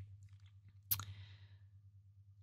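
A single short click about a second in, followed by a brief hiss, over a faint steady low hum.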